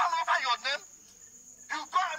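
A man shouting through a handheld megaphone, the voice thin and tinny, in two bursts with a lull of about a second between them.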